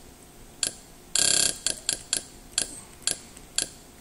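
Kodi menu navigation sound effects: about seven short pitched ticks as the selection steps through the menu, and one longer tone about a second in.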